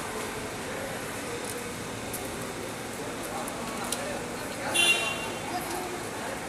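Steady outdoor background noise with faint, distant voices of onlookers, and a short high-pitched call or toot about five seconds in.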